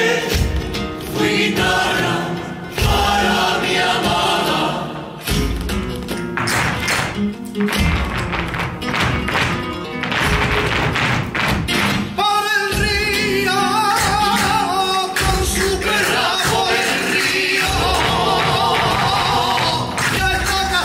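Flamenco music: a solo voice sings a wavering, ornamented line. Through the middle of the stretch the singing drops back under a fast run of sharp percussive strokes, then returns.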